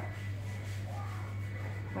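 A steady low hum, with a faint voice in the background around the middle.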